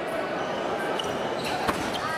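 Background chatter of voices filling a large hall, with one sharp knock near the end that fits a fencer's foot striking the piste.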